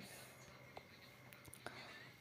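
Near silence: faint room hiss with a couple of small clicks.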